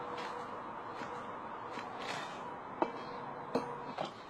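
Workers handling manhole repair parts against a steady background hiss. There are light knocks throughout, and two sharper clinks with a brief ring, a little under three seconds in and about half a second later.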